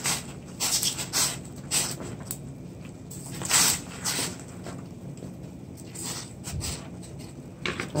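Pot of water at a rolling boil, bubbling, with irregular splashes and knocks as pieces of cow foot are dropped into it by hand; one louder splash comes about halfway through.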